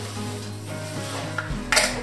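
Salt being poured into a blender jug onto tomatoes and chunks of bread, a soft steady granular hiss, with a brief louder rustle near the end.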